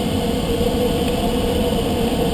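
Steady rushing airflow noise inside a glider's cockpit in flight, with one steady tone running through it.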